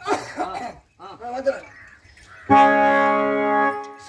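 A performer's voice is heard for about the first two seconds. Then, a little past halfway, a harmonium comes in loudly with one steady held chord that lasts nearly to the end.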